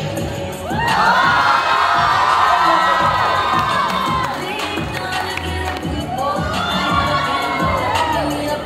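A crowd of guests cheering and shrieking. A loud burst of overlapping high-pitched shouts starts about a second in and lasts about three seconds. A second swell of cheering comes near the end.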